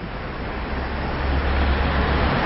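Road traffic on a wide city boulevard: a steady wash of tyre and engine noise with a low rumble, growing louder as a van approaches.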